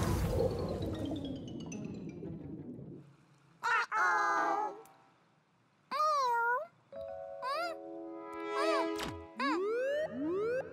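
Cartoon soundtrack: a whooshing sound effect fading away over the first few seconds, then short squeaky, pitch-bending character calls and playful music with boing-like glides. Near the end a rising, repeating siren starts: the Octo-Alert alarm going off.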